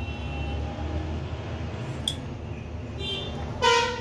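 A short, loud horn toot near the end, over a steady low rumble of background noise, with a faint tap about halfway through.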